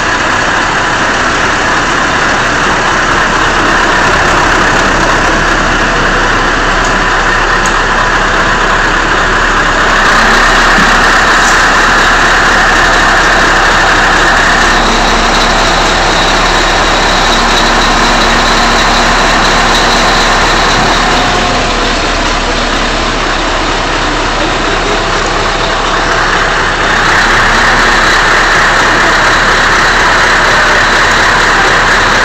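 Crane engine running steadily: a loud, even mechanical noise that eases slightly for a few seconds past the middle.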